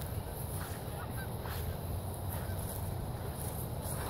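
Quiet outdoor background: a steady low rumble, with a couple of faint short calls in the first second or two.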